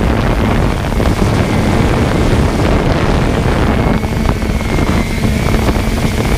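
Loud, gusty rumble of wind buffeting the microphone, with a faint steady high tone joining in the second half.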